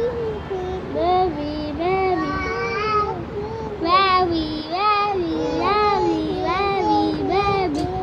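Children singing in a sing-song voice, a run of short rising-and-falling phrases one after another.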